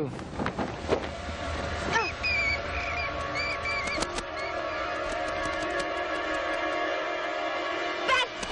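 Eerie soundtrack music holding a steady sustained chord. In the first two seconds there are a few sudden whooshing hits, and short high warbling chirps come between about two and four seconds in.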